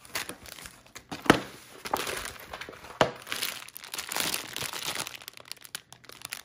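Plastic packaging crinkling and rustling as a bundle of small plastic bags of diamond painting drills and a large kit sheet are handled and turned over. There are a few sharper crackles, the loudest about a second in and another about three seconds in.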